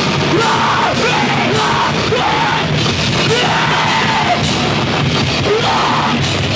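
A live rock band playing loud and fast: drum kit and electric guitar, with a singer shouting the vocals.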